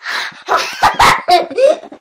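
A young boy yelling and roaring playfully, a run of loud growly shouts whose pitch swoops up and down, loudest about a second in.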